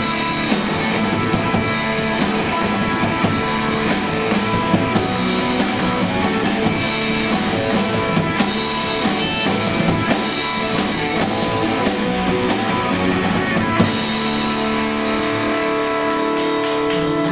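Live rock trio playing an instrumental stretch: electric guitar, bass and a drum kit with cymbals. The drums stop about 14 seconds in, leaving the guitars ringing on.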